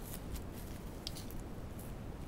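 Faint rustling and a few light clicks from fingers handling a ribbon flower, over a steady low background hum.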